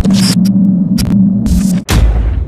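Glitch sound effect of a logo animation: a loud electric buzzing hum broken by static crackles. It cuts out suddenly near the end and gives way to a loud hit that fades into a low rumble.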